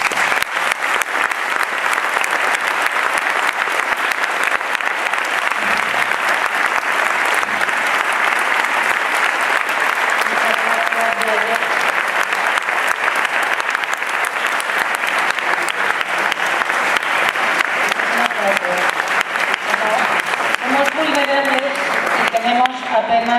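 Audience applauding steadily and at length, the dense clapping of a full hall. A voice starts speaking over the applause near the end.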